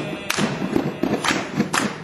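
A seated group doing body percussion: a quick, even beat of hand slaps on the body, broken by a few sharp hand claps.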